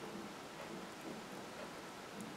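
Faint steady hiss of room tone, with no clear distinct sounds.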